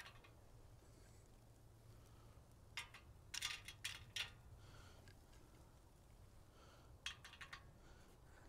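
Wood pellets dropped by hand into the metal burn tube of a homemade pellet heater: a few faint clicks in short clusters, about three seconds in, around four seconds and again near the end, otherwise near silence.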